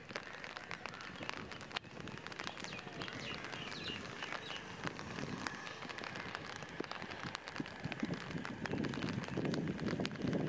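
Rain falling outdoors, with a steady hiss and irregular sharp taps of drops close to the microphone. A low rumble builds near the end.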